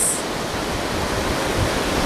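Ocean surf breaking along the shore with wind, a steady rushing noise.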